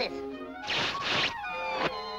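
Orchestral cartoon score. About a third of the way in comes a noisy crash-and-swish sound effect lasting well under a second, followed near the end by a quick falling glide.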